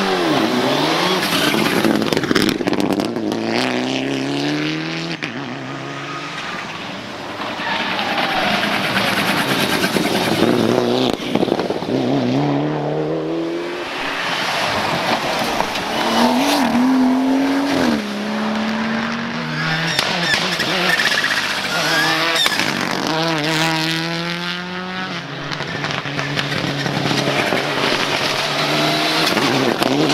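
Rally cars, among them Mitsubishi Lancer Evolutions and a BMW 1 Series, accelerating hard past one after another. Each engine note climbs, drops at a gear change and climbs again through the gears.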